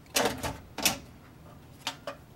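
A hard drive in a plastic tool-less bracket being handled and fitted into an open desktop computer case: a few sharp plastic-and-metal clicks, the last near the end.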